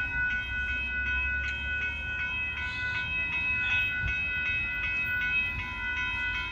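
Railroad grade crossing warning bell ringing steadily, about three strikes a second, over a low rumble.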